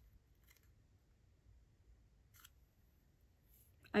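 Quiet room with a few faint, short paper scrapes as a word card is handled and slid across a whiteboard; a voice starts at the very end.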